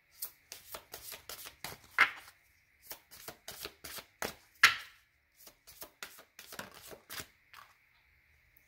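A deck of tarot cards being shuffled by hand: an uneven run of short card slaps and flicks, the two loudest about two seconds in and just before five seconds.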